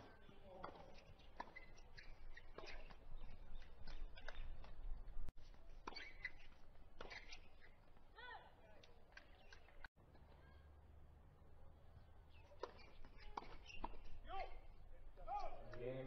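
Tennis ball being struck by rackets and bouncing on a hard court during doubles rallies: a string of sharp knocks about a second apart, with short voices calling out between shots.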